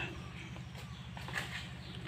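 Quiet outdoor background with a low steady hum, in a pause between spoken words.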